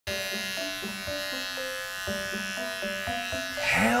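Electric shaver buzzing steadily, over background music of short stepped notes with a soft beat; a man's shout starts near the end.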